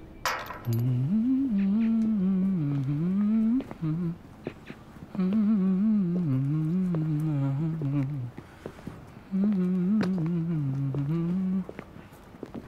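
A man humming a slow tune in a low voice, in three long phrases with short pauses between them. Just before the humming begins there is a single sharp metallic clank, as of a metal gate's latch or chain.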